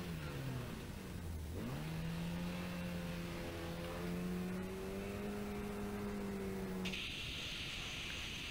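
Opel Kadett rally car's engine revving through a hairpin: the pitch drops, then climbs steadily again as the car accelerates away. Near the end the engine cuts off abruptly and a steady hiss takes over.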